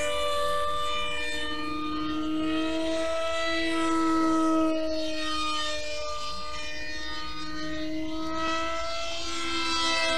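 Electric brushless motor and propeller of an RC model plane droning at a steady part throttle as it flies high overhead. The pitch slowly rises and falls as the plane circles, rising highest around the middle.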